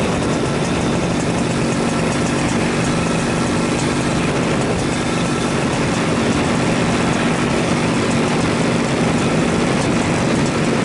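Paramotor engine and propeller running steadily in flight: a loud, constant drone that holds the same pitch throughout.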